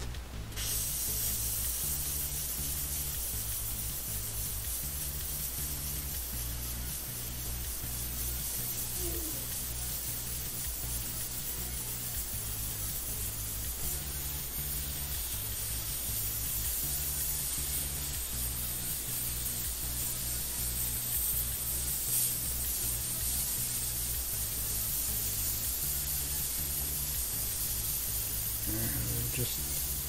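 Gravity-feed airbrush spraying red paint onto a sneaker's fabric, a steady hiss of air, over background music with a repeating low bass pattern.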